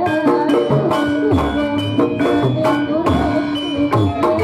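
Javanese barongan accompaniment music: hand drums beating a steady rhythm over sustained notes from tuned percussion and melody instruments.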